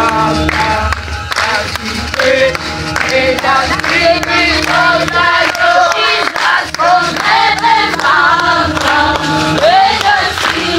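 A choir singing a song, many voices together over steady sustained bass notes of an instrumental backing.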